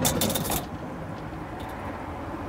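A steel tape measure scraping and rattling briefly as it is pulled out along the trunk floor in the first half second, followed by a steady low background hum.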